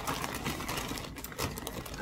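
Continuous rustling and crinkling of packaging with small clicks, as a skein of yarn is dug out of a box.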